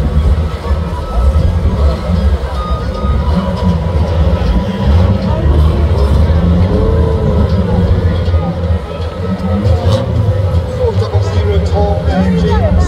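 Several 2-litre saloon stock car engines running at low revs, a steady deep drone as the cars idle and roll slowly around the track, with indistinct voices over it.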